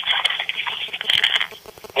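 A muffled voice coming through a phone, the person at the other end of the call answering. It comes in two short stretches, the second about a second in, with the thin, narrow sound of a phone line.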